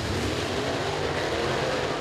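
A pack of dirt super late model race cars, V8 engines, running together at racing speed just after the green flag. Their engines blend into one steady drone.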